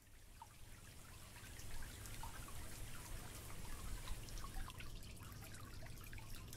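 Water dripping and trickling, a soft steady hiss with many small scattered drips and splashes, rising slowly in level over the first couple of seconds.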